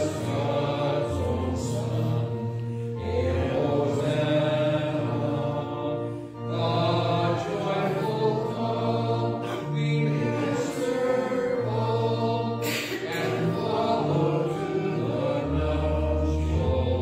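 A congregation singing a hymn with organ accompaniment. The organ holds steady bass notes under the voices, and there is a brief break between sung lines about six seconds in.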